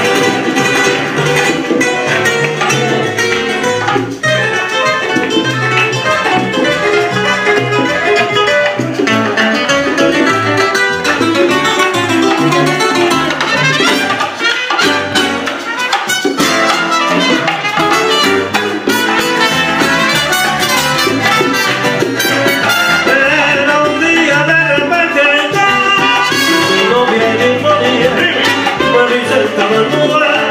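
Live band playing Latin music in a salsa style: strummed and plucked guitars over drums and percussion, with a man singing.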